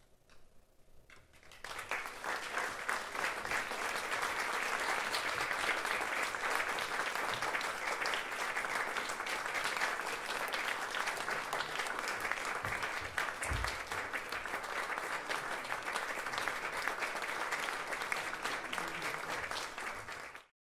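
Audience applauding. It starts about two seconds in, after a near-quiet pause, and goes on as dense, steady clapping from a club crowd.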